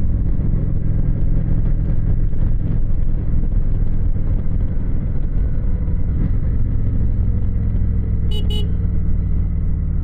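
Motorcycle engine running steadily at cruising speed with wind rush, heard from on the bike. Two short, high-pitched beeps come in quick succession near the end.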